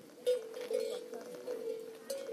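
A cowbell clanking at uneven intervals, each strike ringing on.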